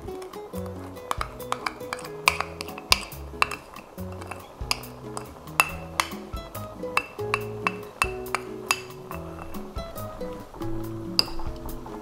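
Background music with held notes, over many irregular sharp clinks of a metal spoon scraping against a ceramic bowl as thick gochujang sauce is scraped out into a pot.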